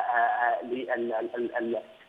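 A man speaking Arabic over a telephone line, his voice thin and phone-narrow.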